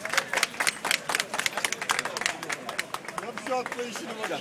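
Spectators clapping in an uneven patter of many separate claps, over crowd voices and a short call near the end.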